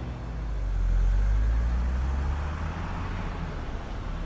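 A car driving along the street, probably the red Mercedes-Benz convertible in view: a low engine hum with road noise that swells about a second in and then slowly eases off.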